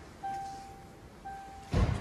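Car's interior warning chime: a single steady tone repeating about once a second, each note fading out, heard twice. Near the end comes a thump, the loudest sound.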